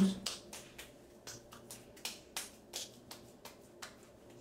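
Hands patting skincare product into the face: a run of light, quick slaps of palms and fingers on skin, about four a second.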